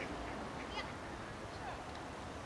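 Ducks quacking a couple of times, short and faint, over steady outdoor background noise.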